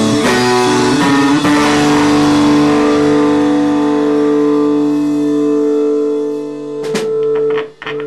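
Live band of electric guitars and drum kit playing, then letting long sustained chords ring on and slowly fade, as at the close of a song. About seven seconds in come a few sharp hits, and the sound then drops away suddenly.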